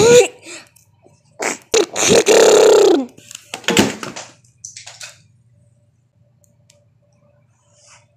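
A child's wordless vocal noises: a laugh at the start, then a loud drawn-out voiced sound about two seconds in that drops in pitch at its end, and a shorter one near four seconds. After that only a faint low steady hum remains.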